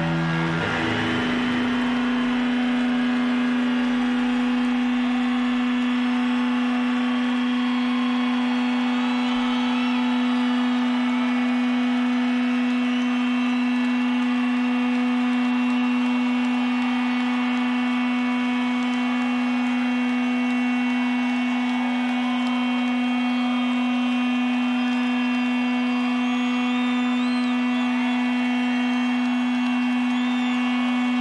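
A loud, steady electric drone from the stage amplification: one low note held unchanging with its overtones, left sounding after the band stops playing, the usual amplifier feedback at a rock show's encore break. Faint wavering whistles and shouts from the crowd run under it.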